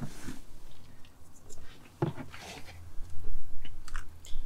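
Light rustling and small clicks as a fabric sunshade and its plastic clip are worked into the roof trim, inside a car cabin. A sharper click comes about two seconds in and another near the end.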